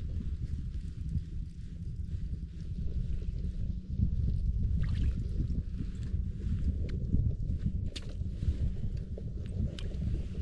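Wind buffeting the microphone: a steady low rumble, with a few faint sharp clicks in between.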